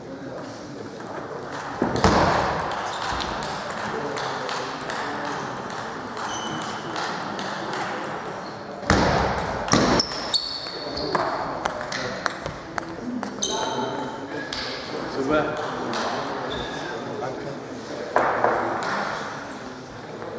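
Table tennis being played: the plastic ball clicking sharply off rubber paddles and the table in quick exchanges, echoing in a large sports hall.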